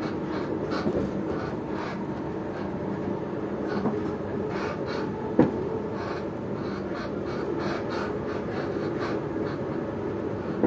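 Steady running rumble of a passenger train, heard inside the carriage at speed, with faint irregular ticks. There is one sharp knock about five seconds in.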